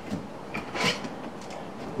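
Hands rummaging in a fabric tool bag and drawing out a folding rule: a few soft rustles and light clicks, the loudest a little under a second in.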